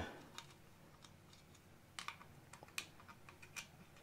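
A few faint, sharp clicks and taps as antennas are screwed onto a wireless video transmitter, the clearest about halfway through.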